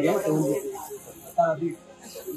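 People talking at close range, with no words made out, over a steady high hiss that drops away a little past halfway.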